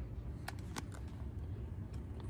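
Steady low hum with three faint, short clicks as a plastic scale-model pickup is handled on a bench.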